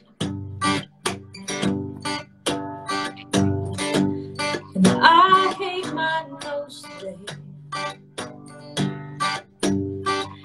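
Acoustic guitar strummed in a steady rhythm as accompaniment to a slow ballad, with a woman singing a phrase about halfway through.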